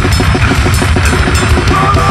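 Loud powerviolence/grindcore band recording: heavy distorted guitar and bass under rapid, pounding drum-kit hits. A high, wavering sustained note comes in near the end.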